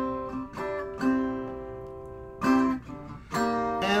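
Acoustic guitar strummed, about five chords, each left to ring and fade before the next.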